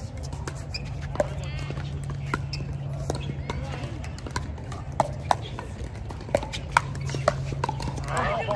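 Pickleball paddles hitting a hard plastic pickleball in a rally, sharp pops that come faster from about five seconds in as the players trade quick volleys at the net, over a steady low hum.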